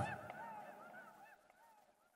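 A run of short, arched honking calls, several a second, fading out within about a second and a half as the track ends.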